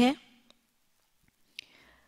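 A woman's voice finishing a word, then a pause with a short, faint intake of breath near the end.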